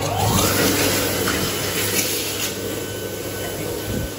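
Dyson Airblade AB01 hand dryer starting up. The motor whine rises quickly in pitch over the first half-second, then the dryer runs with a steady, loud rush of air and a faint high whine.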